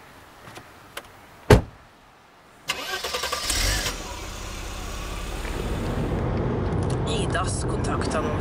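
A single loud thump about a second and a half in, then a car engine cranks and starts about a second later and settles into running steadily, slowly getting louder.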